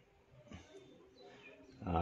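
Quiet room with a faint, drawn-out hum of a man's voice, starting about half a second in and fading before speech resumes.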